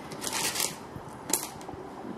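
Small broken ceramic shards rattling in a plastic container as it is handled, with one sharp click a little past halfway.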